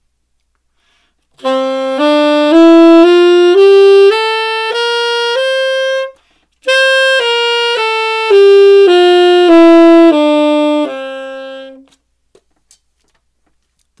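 Tenor saxophone playing a one-octave concert C Mixolydian scale (C, D, E, F, G, A, B flat, C), rising one note at a time at about two notes a second. After a short breath it descends back down to the low C and stops.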